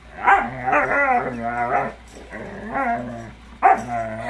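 Husky barking and yowling in three loud runs of wavering, pitched calls: a short burst about a third of a second in, a shorter one past the middle, and another near the end. This is the dog's playful vocalizing during a tug game over a blanket.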